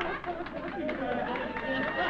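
Indistinct voices: talk and chatter with no clear words.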